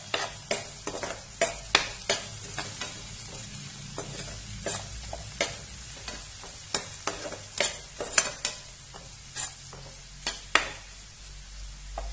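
Metal spatula scraping and knocking against a non-stick frying pan, with irregular sharp clicks, as chopped tomato and onion masala is stirred. Under it is a steady sizzle of the masala frying.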